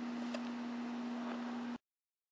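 Room tone: a steady low hum with light hiss and a faint click shortly after the start, cutting off abruptly to complete silence near the end.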